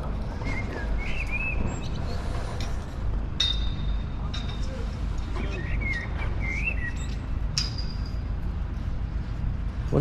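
A low steady rumble with birds chirping a few times, and two short metallic clinks that ring briefly, about three and a half and seven and a half seconds in.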